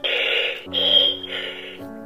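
Buzz Lightyear Signature Collection talking toy playing an electronic sound effect through its small speaker: three short bursts of crackly, radio-style hiss over a low steady tone.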